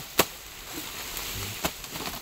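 Two sharp chops of machete blades striking unburned sugarcane stalks, about a second and a half apart.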